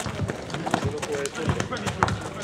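A basketball bouncing on an asphalt court, mixed with players' running footsteps: irregular low thuds several times across the two seconds.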